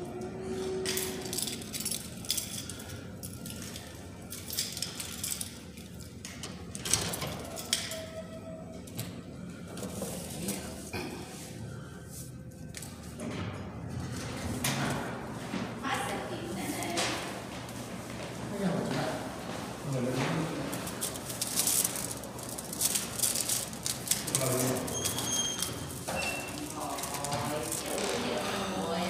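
Indistinct voices talking, unclear enough that no words come through, mixed with scattered knocks and clinks; the voices grow more frequent in the second half.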